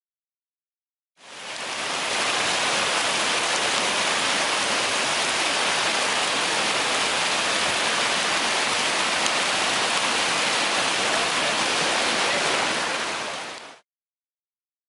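Whitewater of Class III rapids rushing steadily. It fades in about a second in and cuts off shortly before the end.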